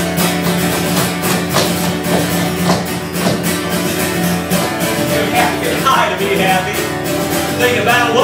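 Acoustic guitar strummed in a steady country rhythm, played live as an instrumental break between verses of a song.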